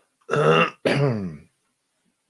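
A man clearing his throat in two short, loud bursts, each falling in pitch.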